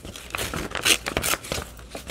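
A printed book page being torn by hand in a series of short, uneven rips, with paper rustling.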